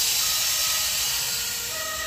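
Air suspension being deflated: compressed air hissing steadily out of the system as the car drops toward zero bar, easing off slightly near the end. Faint steady whistling tones ride on the hiss.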